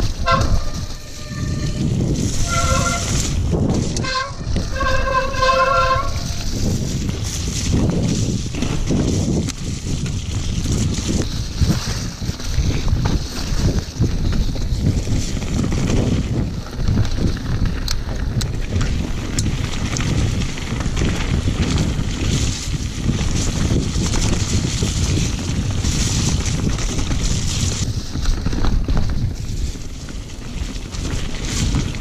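Mountain bike disc brakes squealing in three bursts of a steady multi-tone squeal over the first six seconds. After that, a continuous rushing and rumbling of wind on the microphone and tyres over the muddy trail as the bike runs downhill.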